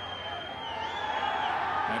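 Stadium crowd noise from a college football game, a steady murmur with a long high held tone that dips and comes back up about halfway through, then stops.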